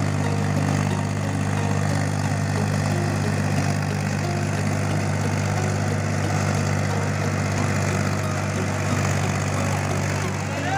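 Mahindra tractor's diesel engine running steadily as the tractor drives through deep paddy-field mud on iron cage wheels.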